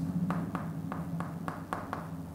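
Chalk writing on a chalkboard: a series of about seven short, sharp taps as the chalk strikes and strokes the board, over a low steady room hum.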